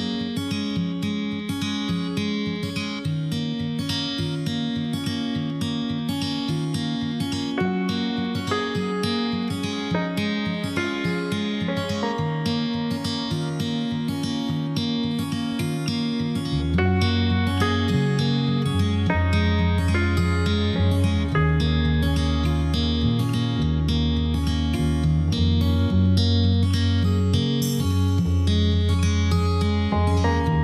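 Background music: an acoustic guitar instrumental with plucked and strummed notes, a deeper bass line joining a little over halfway through.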